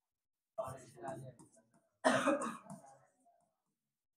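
A person's voice in two short bursts about a second and a half apart, the second louder, each starting suddenly.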